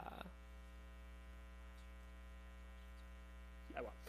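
Faint, steady electrical mains hum with a stack of overtones, heard in a pause between words. Short snatches of a man's voice come right at the start and just before the end.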